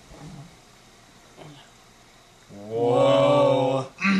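A low male voice holding one loud, steady vocal 'aah' for about a second and a half, starting about two and a half seconds in, after a faint murmur near the start.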